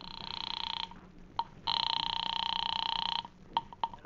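Telephone ring signal heard over the line, a radio-drama sound effect of a call being placed: two long, buzzing rings, then a few clicks near the end as the receiver at the other end is picked up.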